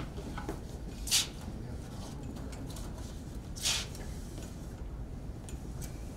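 ES&S precinct ballot tabulator taking in a ripped ballot and ejecting it, heard as two short paper-feed whooshes about two and a half seconds apart. The torn ballot is rejected as too short because the scanner cannot read its timing tracks.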